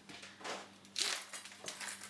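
A plastic ice cube tray being handled, making a few short crackles and rustles, the loudest about a second in.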